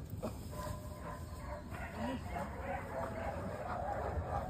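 A large dog making faint, irregular vocal sounds while it hangs onto a tug toy and is swung around in circles.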